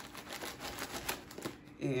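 Plastic packaging crinkling and crackling as it is pulled off a potted plant by hand, a run of quick, irregular clicks.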